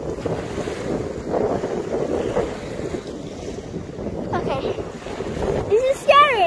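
Wind buffeting the phone's microphone in a steady rough rumble, with small waves washing against the groyne.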